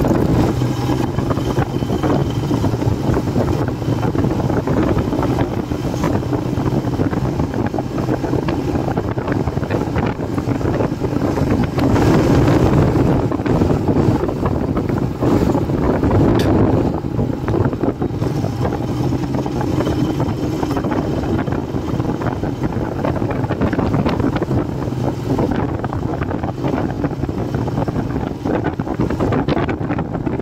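Royal Enfield Himalayan's air-cooled single-cylinder engine running steadily under way, with wind buffeting the microphone. It gets a little louder for a few seconds about twelve seconds in, then settles again.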